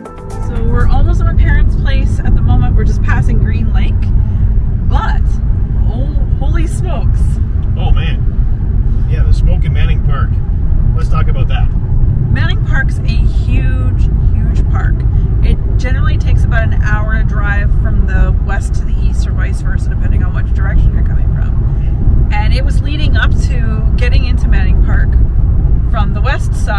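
Loud, steady low rumble of road noise inside a moving car's cabin, with a woman's voice talking over it.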